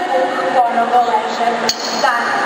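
A woman speaking into a microphone, with one sharp click near the end.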